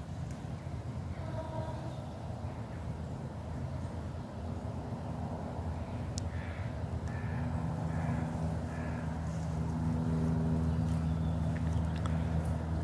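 Crows cawing faintly, a short series of calls in the middle of the stretch, over a steady low engine hum from a vehicle that grows louder in the second half.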